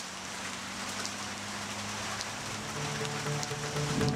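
Steady rain falling, slowly growing louder, with scattered drip ticks. Low sustained music tones run underneath, and a few soft musical notes come in near the end.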